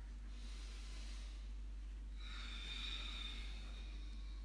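A slow, deep yoga breath close to the microphone: a soft inhale, then a longer, louder exhale starting about two seconds in.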